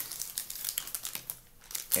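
Irregular crackling and crinkling rustle, a scatter of small clicks that thins out about a second and a half in.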